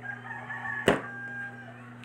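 A rooster crowing in the background: one drawn-out call of about a second and a half. A single sharp click near the middle is louder than the crow, and a steady low hum runs underneath.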